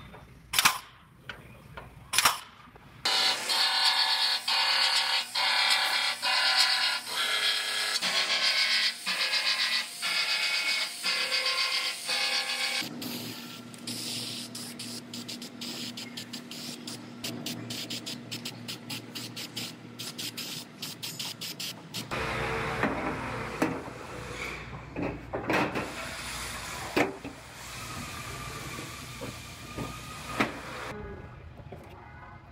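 A hand panel hole punch snapping through sheet-metal flange twice in the first couple of seconds, punching holes for plug welds. Then a loud stretch of rhythmically pulsing steady tones, followed by an aerosol can of weld-through primer hissing in short spurts.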